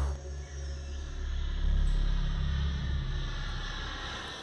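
A low, steady rumble with a faint hiss above it.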